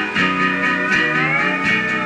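Country backing track playing an instrumental passage, with no singing over it.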